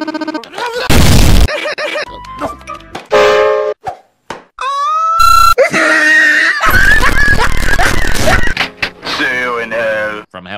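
Chopped-up, remixed cartoon audio: clay penguin characters' gibberish babble and music cut into stuttering repeats and pitch-shifted snippets, including a rising glide about five seconds in. Two loud, heavily distorted blasts come about a second in and again for about two seconds past the middle.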